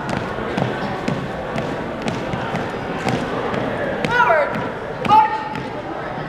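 Marching footsteps of a color guard on a gym floor, about two steps a second, with a few short squeaks near the end.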